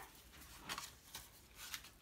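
Faint rustling of a thick paper page being turned in a spiral-bound junk journal, a few soft brushes of paper.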